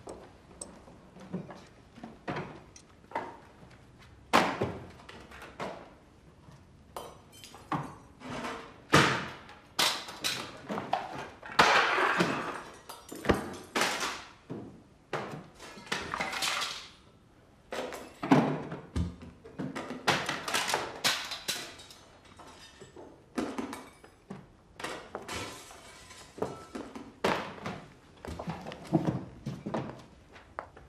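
An irregular series of thuds and crashes with breaking glass as a home is searched and ransacked: objects knocked over and smashed. The heaviest crashes come about a third of the way in and again just past the middle.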